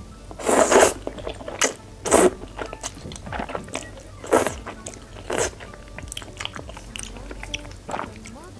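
A person slurping thick noodles into the mouth in four loud slurps, the first about half a second in, then near two, four and five and a half seconds, with wet chewing and small mouth clicks in between.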